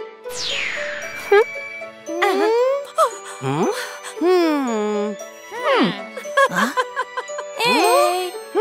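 Cartoon soundtrack: wordless character voices with sing-song, gliding pitch over light background music. A falling whoosh sound effect comes about half a second in, with jingly chime effects mixed in.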